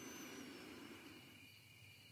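Near silence: faint room tone with a light steady hiss.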